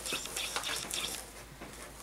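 Soft, irregular rustling and scratching of wired ribbon being wrapped around a small gift box and handled by hand.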